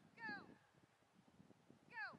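Faint high-pitched yelps from a dog, each sliding down in pitch: one about a third of a second in and another just at the end.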